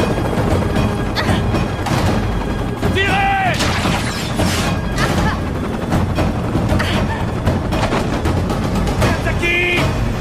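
Mixed action-film soundtrack: dramatic music with gunfire and booms, and men shouting twice, about three seconds in and near the end.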